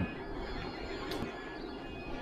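Steady low background hum of several 3D printers running, their cooling fans and stepper motors, with a faint click about a second in.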